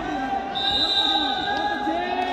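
Several men shouting and calling out over one another around a wrestling bout. A high steady tone starts about half a second in and holds for over a second.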